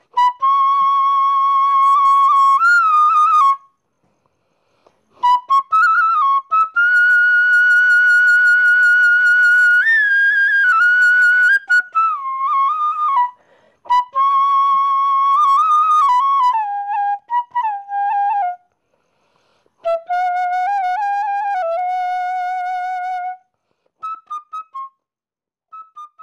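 Background music: a solo flute melody of long held notes with small slides between them, played in phrases separated by short pauses, sinking lower in the later phrases and ending with a few short notes.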